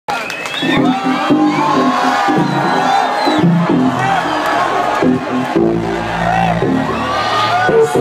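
A club crowd cheering, whooping and shouting over house music with a bassline. Many voices rise and fall throughout.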